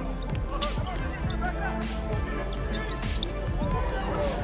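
Basketball being dribbled on a hardwood court, a steady run of bounces about two a second.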